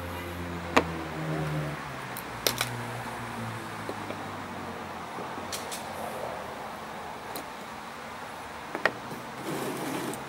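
Scattered sharp clicks and taps of small carburetor parts being handled and fitted by hand, about six in all, the loudest about a second in. A vehicle engine hums in the background and fades out about two seconds in.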